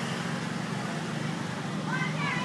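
Motor scooters running through a crowded street, a steady low engine hum under the general murmur of people's voices.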